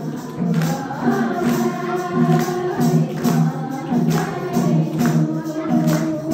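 A Nepali devotional bhajan sung by women, a lead voice on a microphone with others joining, over a steady beat of hand percussion.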